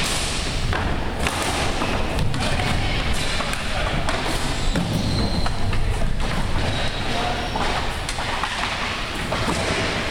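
Floor hockey on a gym's hardwood floor: a steady run of thuds and knocks from sticks, ball and feet, with players' voices underneath.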